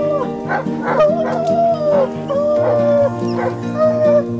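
Hunting hounds baying: long drawn-out bawls that drop in pitch at their ends, broken by a few short, sharp barks, with background music underneath.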